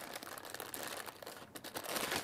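Small clear plastic bag crinkling as hands handle it and work it open to get at the shock mount inside: a quick run of small, faint crackles.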